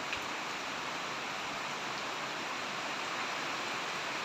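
Heavy typhoon rain falling steadily, an even, unbroken hiss of downpour.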